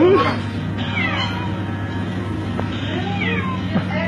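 A cat meowing several times in falling cries, near the start, about a second in and again near the end, over a steady low hum.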